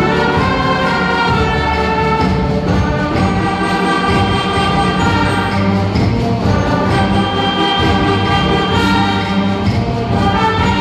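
School concert band of woodwinds, brass and percussion playing a piece, the winds holding sustained chords.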